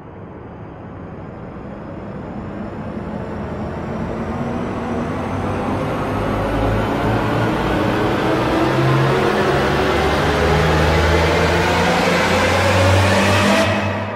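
A swelling sound effect that builds steadily louder and rises in pitch for over ten seconds, then cuts off sharply near the end.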